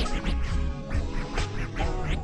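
Slowed-down ("screwed") West Coast G-funk hip hop beat with DJ turntable scratches cutting across it several times.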